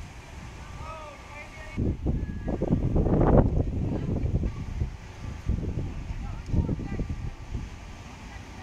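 Wind buffeting the microphone with low rumbles, strongest two to four seconds in, over indistinct distant voices.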